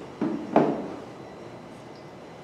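A water bottle being picked up and handled: two short knocks about a third of a second apart, the second louder, then quiet room tone.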